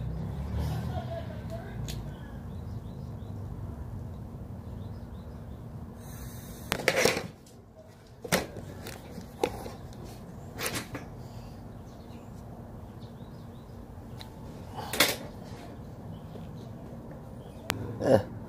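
Handling noise from a tobacco pipe being worked on close to the microphone: a handful of short, sharp sounds, the loudest about seven seconds in, again near fifteen seconds and at the very end, over a steady low background.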